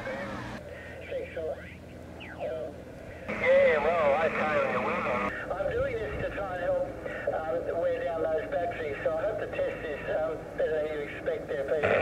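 Single-sideband voice traffic received on the 40 m band through a Yaesu FT-817's speaker: thin, narrow voices over a hiss of band noise, with a louder, hissier stretch of about two seconds starting about three seconds in.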